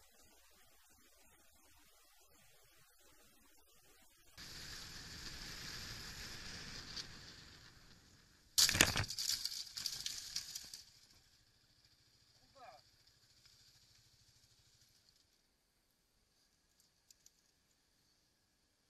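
A road collision caught on a dashcam: after a few seconds of steady rushing wind and road noise comes a sudden loud impact, followed by about two seconds of crashing and clattering as the camera is knocked over. A short squeak follows a couple of seconds later, then it goes quiet.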